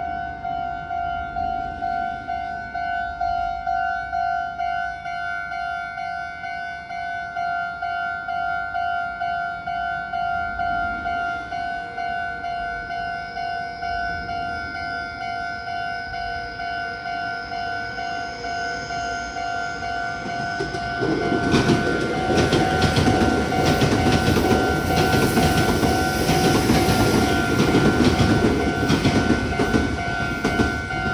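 Japanese level-crossing warning bell ringing in a steady repeating two-tone clang. About 21 seconds in, a Meitetsu electric train passes over the crossing with loud wheel-on-rail clatter, louder than the bell, which keeps ringing.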